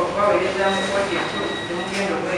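Voices speaking, with a thin, steady high-pitched tone running underneath from about half a second in until near the end.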